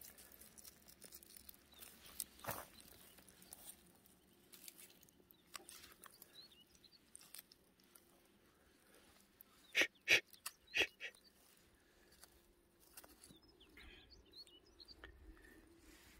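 Quiet outdoor ambience with faint small-bird chirps, broken about ten seconds in by a quick run of four sharp crunching taps on dry grass and twigs.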